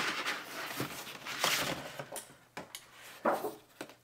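Cardboard sleeve being slid off a plastic tool case: two stretches of scraping and rustling, with a few light knocks of the case.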